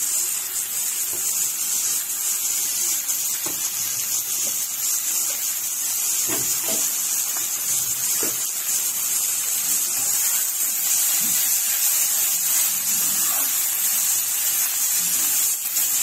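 Chopped onions frying in oil in a stainless steel pan, sizzling with a steady high hiss.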